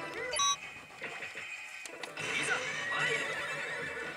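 Yoshimune 3 pachislot machine's sound effects over its music: a short electronic chime near the start, then a horse whinny from the machine's on-screen presentation in the second half.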